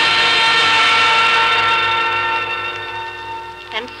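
A held orchestral chord forming a music bridge that slowly fades away, with a narrator's voice coming in near the end.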